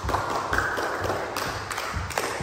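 Footsteps of several people walking on a wooden plank floor, dull thuds about twice a second.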